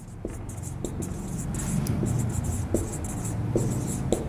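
Marker pen writing on a whiteboard: a run of short, scratchy strokes with a few small taps, over a steady low hum.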